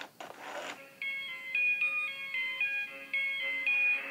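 Big Hugs Elmo plush toy playing a short electronic tune through its built-in speaker: single beeping notes stepping up and down, about four a second, after a short breathy noise near the start.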